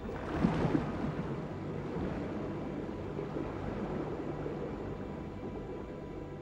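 Underwater ambience: a steady rushing wash of water noise, with a couple of short louder bursts about half a second in.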